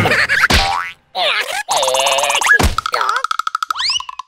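Cartoon soundtrack: a bouncy music cue ends, then after a short gap a cartoon larva's squeaky, wordless vocalizing mixes with comic sound effects. Near the end a steady held tone sounds under rising whistle-like glides.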